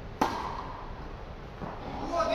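A tennis racket strikes the ball on a serve: one sharp hit with a short ringing echo from the indoor hall, then a fainter knock near the end.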